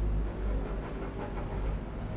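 Faint scratching of a pencil making short strokes on paper as a small figure is sketched, over a steady low rumble.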